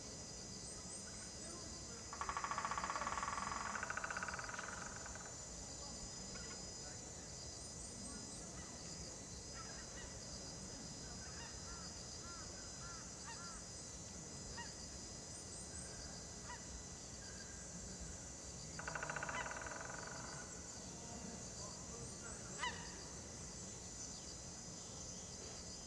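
A large bird honking twice: a harsh call of about three seconds, rising in pitch partway through, about two seconds in, and a shorter one near the end. Smaller bird chirps come in between over a steady high insect drone, and a single sharp click sounds shortly before the end.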